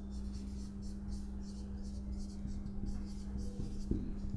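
Marker pen writing a word on a whiteboard: a quick run of short strokes, several a second, over a steady low hum.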